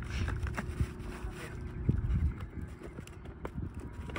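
Handling noise from a foam RC jet's battery bay as the battery is pushed forward: light knocks and rubbing over a steady low rumble.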